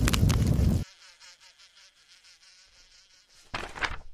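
Roaring, crackling fire with a heavy low rumble, cutting off suddenly about a second in. A faint buzzing follows, and a brief loud rush of noise comes near the end.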